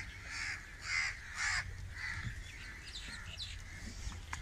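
Crows cawing: several harsh caws in quick succession over the first two seconds, then fainter, scattered bird chirps.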